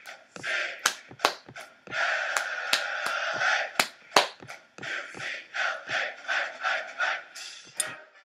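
Hands clapping, about a dozen claps at uneven spacing, with a hissing, breathy noise between many of them.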